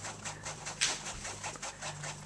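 Fingers scratching a puppy's chest fur in quick rustling strokes, several a second.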